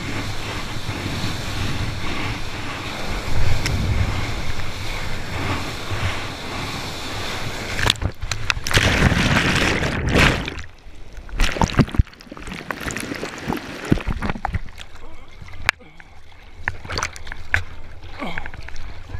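Rushing water and wind from a surfboard riding a wave, picked up by a camera held in the surfer's mouth. About eight seconds in a louder rush of breaking whitewash swamps the camera for a couple of seconds. After that come quieter sloshing and scattered splashes as the camera bobs at the water's surface.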